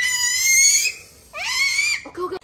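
A toddler's high-pitched squeals, twice. The first one is held and ends about a second in. The second swoops up and holds until near the end.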